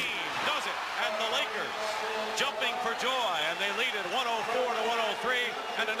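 A man's drawn-out exclamations over the audio of a televised basketball game, with steady crowd noise and a few sharp knocks.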